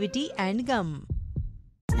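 The close of a TV advert: a voice over background music, fading out about a second in. Brief near silence follows, then the next advert's voice and music cut in sharply just before the end.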